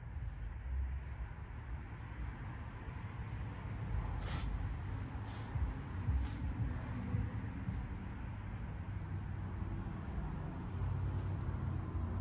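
A damp microfiber towel rubbing over a car's painted hood, a soft uneven rubbing over a steady low hum, with a few light clicks around the middle.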